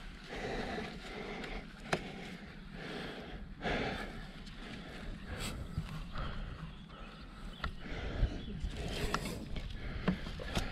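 Wind rumbling on the action-camera microphone, with scattered sharp knocks of plywood ramp boards and legs being handled during assembly.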